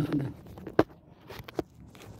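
Phone handled close to its microphone: a man says a short 'okay', then two sharp knocks about three-quarters of a second apart.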